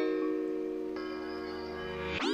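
Background music of held, sustained chords; a higher layer of notes comes in about halfway through.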